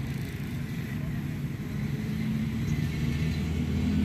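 A low, steady engine or motor hum, with a few steady tones, growing a little louder near the end.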